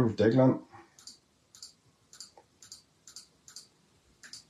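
Computer keyboard keys clicking in a steady run, about two presses a second, as a number is edited in a text field.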